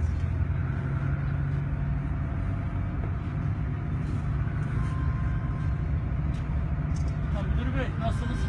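Minibus engine and road noise heard inside the cabin while driving: a steady low rumble, with faint voices over it.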